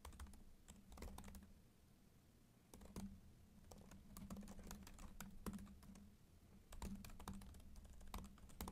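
Faint computer keyboard typing: irregular runs of quick keystroke clicks, with a pause of about a second shortly after the start.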